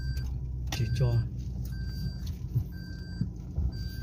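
Low, steady engine and road rumble heard from inside a moving car's cabin, with a short electronic warning chime from the car beeping about once a second.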